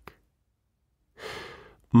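A pause, then about a second in a soft breath from the narrator, fading off just before he speaks again.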